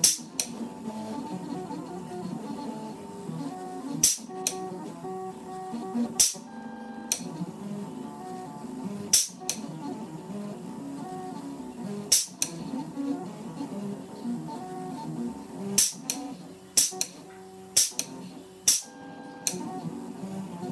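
A home-built RepRap-style 3D printer's stepper motors whining as it prints cookie dough through a syringe extruder. The pitch holds steady and then jumps to a new note with each move, and there are sharp clicks at irregular intervals.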